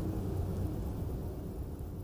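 Low, steady rumbling noise with no clear pitch, slowly fading away: a dark ambient sound bed.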